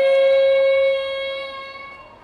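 A woman singing one long, high held note into a stage microphone, steady for about a second and then fading away.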